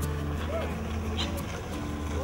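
A steady low engine hum with people's voices over it.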